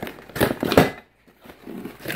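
Cardboard retail box of a cervical traction kit being handled and opened: two brief scraping, rustling noises about half a second apart in the first second, then quiet.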